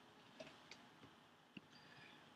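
Near silence with a few faint clicks, three in all, from a computer mouse.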